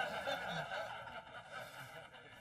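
A small audience laughing and chuckling, dying down toward the end.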